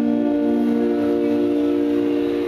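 The closing note of a live acoustic folk-pop song: women's voices hold a long, steady note in harmony over the last acoustic guitar chord after the strumming has stopped.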